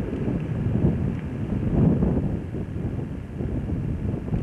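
Wind buffeting the microphone outdoors: a low, uneven rumble that rises and falls in gusts.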